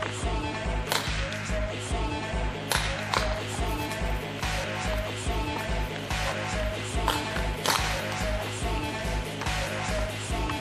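Background music with a steady, driving beat: regular low bass pulses under sustained tones, with sharp percussive hits every second or so.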